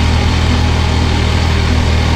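Honda Monkey Baja's small single-cylinder engine running at a steady speed as the bike is ridden, with road and wind noise.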